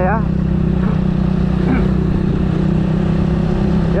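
Motorcycle engine running steadily at a constant cruising speed of about 20 mph, heard close to the rider, with road and wind noise.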